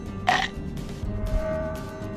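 Background music with a short, loud vocal-like sound effect from the cartoon creature about a quarter second in. From about a second in, a held steady tone sounds over the music.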